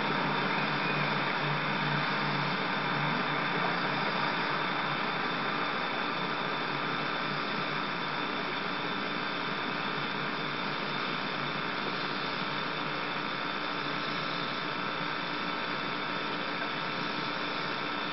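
Steady hiss with faint steady hum tones underneath, unchanging throughout, with no splashes or other distinct sounds.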